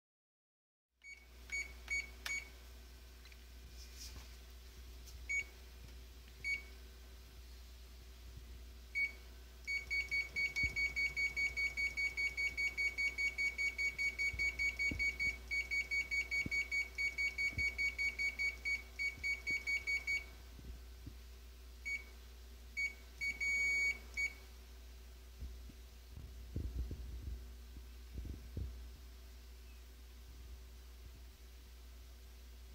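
Ricoh MP C copier's operation panel beeping with each press of its keys and touchscreen: scattered single beeps, then a fast even run of about four beeps a second for some ten seconds, then a few more beeps. A few low thuds near the end.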